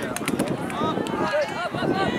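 Several overlapping voices of players and spectators calling out, with a few short sharp clicks near the start.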